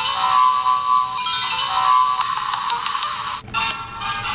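Electronic cubicle doorbell playing a multi-note chime tune through its small speaker after its button is pressed. The tune stops about three and a half seconds in, followed by a short click.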